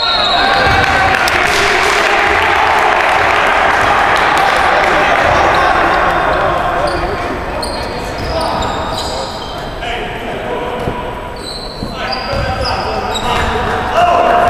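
Gym crowd noise at a basketball game: many spectators' voices, loudest in the first half and easing off after about seven seconds. Short high sneaker squeaks on the hardwood court and a ball bouncing come through in the second half.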